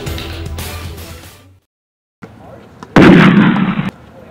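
Music with a steady beat fades out in the first second and a half, followed by a short silence. About three seconds in, a loud blast sound effect lasting about a second cuts off abruptly.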